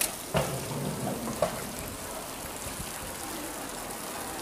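Outdoor pedestrian-street ambience: a steady hiss with a few sharp clicks or knocks in the first second and a half, and brief low voices of passers-by.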